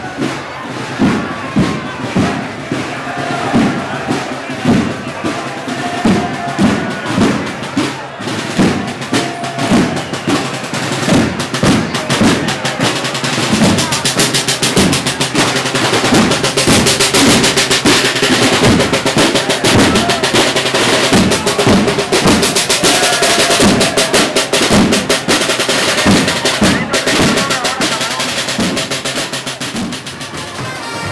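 A marching band's snare drums and bass drum playing a parade march beat. The steady beat gives way to near-continuous snare rolls for much of the second half.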